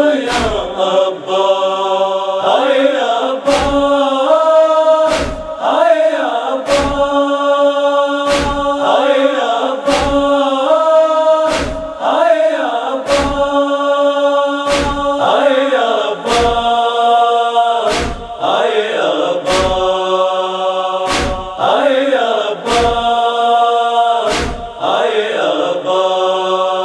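A wordless chorus of voices holding and gliding through the noha's melody, over a steady beat of matam (chest-beating) strikes about every 0.8 seconds.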